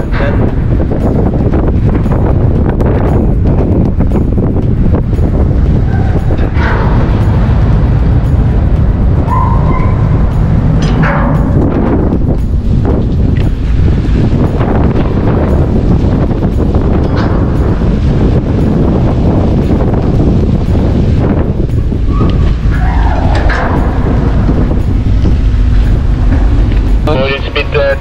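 Wind buffeting the microphone on the open deck of a cargo ship under way, a loud, steady rumble mixed with the rush of the sea along the hull.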